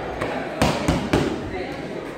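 Boxing gloves striking focus mitts: three quick, sharp punches in a row a little past halfway through.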